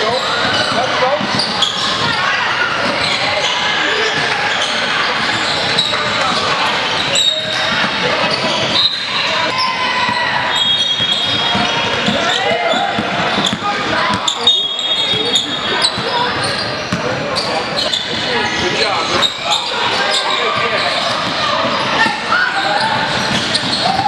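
Live basketball game in a large, echoing gym: basketballs bouncing on the hardwood court under a constant mix of players' and spectators' voices, with a few brief high squeaks that sound like shoes on the floor.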